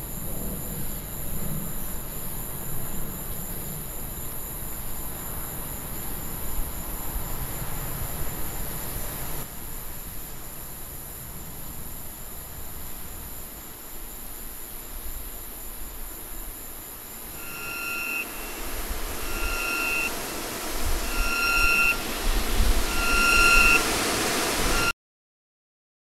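Film soundtrack: a dark, noisy ambient drone. About two-thirds of the way in, a repeating electronic beep joins it, roughly one beep every second and a quarter, growing louder over a swelling low rumble. Then everything cuts off suddenly about a second before the end.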